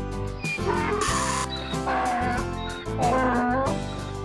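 A donkey braying over background music: a breathy stretch followed by repeated wavering calls.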